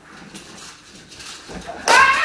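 Scuffling and rustling during a struggle, then near the end a sudden loud, high-pitched wordless shriek.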